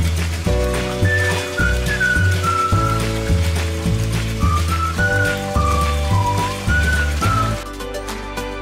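Background music: an instrumental track with a high, gliding melody line over sustained chords and a pulsing bass.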